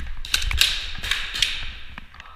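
A series of sharp, irregular clacks and taps of airsoft play, about five in under two seconds, each with a short echo off the hall's walls: airsoft shots and BBs striking the chipboard barricades.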